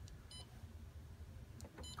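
Xerox WorkCentre touchscreen control panel beeping as its on-screen keys are pressed: two short, high beeps about a second and a half apart, with a faint low hum throughout.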